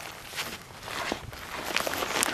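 A series of irregular light clicks and scuffs close to the microphone, like handling or shuffling movement; no gunshot.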